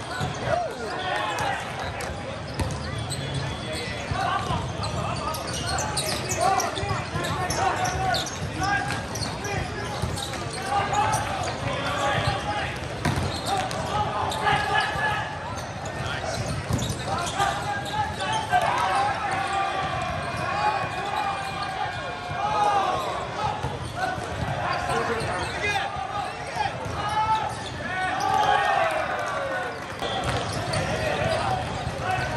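Volleyball play in a large, echoing hall: players shouting and calling over a din of many voices, with the ball being struck now and then.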